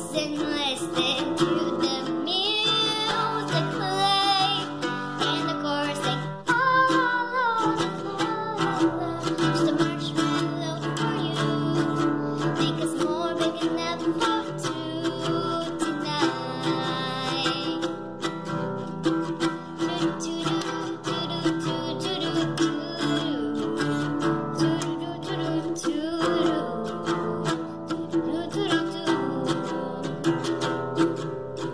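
A girl singing while strumming chords on an acoustic guitar.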